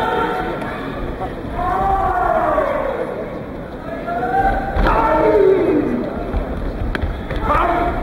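Crowd at a karate kumite bout shouting long drawn-out calls, several voices together, each call sliding down in pitch at its end. Two sharp impacts cut through, about five seconds in and near the end.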